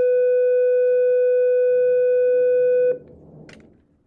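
A loud, steady electronic tone held on one pitch that cuts off suddenly about three seconds in, followed by a faint click.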